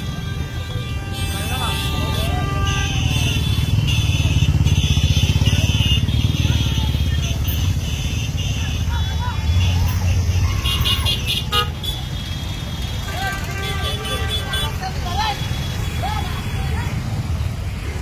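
A slow procession of motorcycles and cars with engines running in a continuous low rumble and horns honking over and over, amid a crowd of people shouting and cheering.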